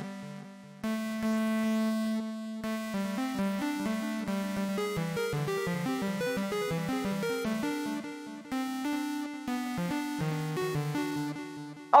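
A saw-wave synthesizer run through iZotope Trash 2 distortion, giving a distorted, guitar-like tone. It plays a melodic line: a held note about a second in, then a run of quick, overlapping notes.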